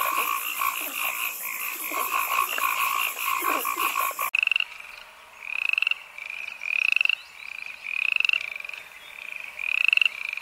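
A dense chorus of frogs giving rapid pulsed calls stops abruptly about four seconds in. It gives way to a single red-and-white-striped poison dart frog (Epipedobates) calling with short, rising, buzzy trills, five of them, a little over a second apart.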